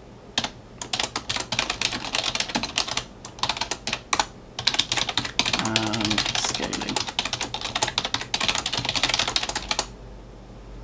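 Typing on a computer keyboard: a fast, irregular run of key clicks with a few short pauses.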